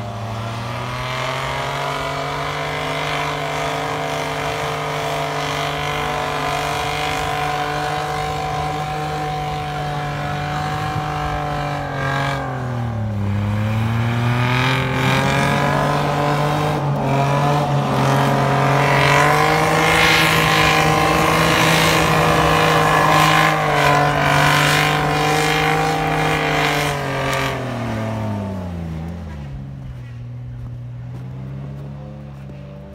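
Mitsubishi Pajero engine pulling hard under load up a snowy track, held at steady high revs. The revs dip once about midway, climb back a little higher, then fall away near the end.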